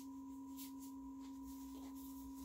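Faint steady hum made of two constant tones, a low one and a fainter higher one, over quiet room hiss.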